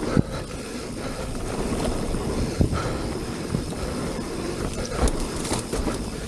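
Mountain bike rolling fast down a dirt singletrack: continuous tyre noise on the dirt with rattle from the bike, broken by a few sharp knocks over bumps.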